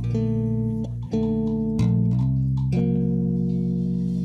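Electric bass guitar playing a slow passage of held notes and chords, moving to a new note about every half second to a second.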